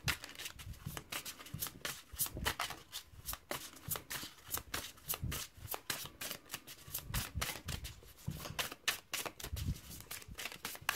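A deck of cards being shuffled by hand: a continuous run of quick, irregular clicks and flicks as the cards slide and slap against one another.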